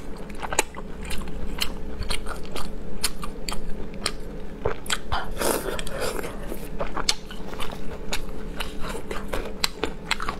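A person biting and chewing food close to a clip-on microphone, with many irregular sharp mouth clicks.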